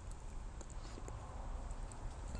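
Low room tone: a faint steady hum and hiss with a few faint ticks.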